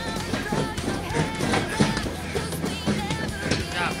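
Background song with a singing voice and a steady instrumental backing.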